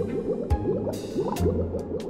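Cartoon underwater bubbling sound effect: a rapid stream of small rising bloops, heard over background music with low bass notes.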